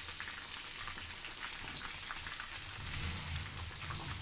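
Masala-coated fish pieces deep-frying in hot oil in a wok: a steady sizzle with a few faint pops.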